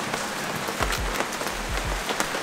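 Steady rain falling on an awning and wet pavement, an even hiss with scattered sharp drips. Low gusts of wind buffet the microphone now and then.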